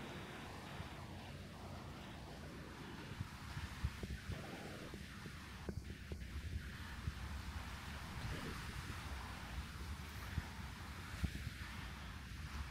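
Wind buffeting the microphone as a steady low noise, with scattered light taps of footsteps on the pier walkway.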